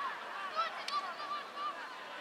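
Young children shouting short, high-pitched calls in quick succession, with one sharp knock about a second in.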